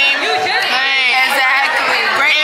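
Women's voices, continuous and close, with chatter.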